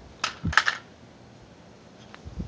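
A small blue toy car dropped onto concrete, clattering. There is one click, then a quick run of three or four clicks about half a second in.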